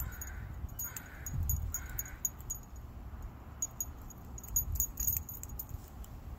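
A crow cawing three times, a little under a second apart. This is followed by scattered light metallic jingles from the dog's collar tags and leash clip as it moves.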